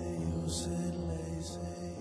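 Live band music between sung lines: sustained chords held steady under a soft, hissing percussion stroke about once a second.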